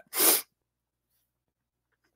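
A single short, sharp breathy burst from a man, about a third of a second long, just after the start.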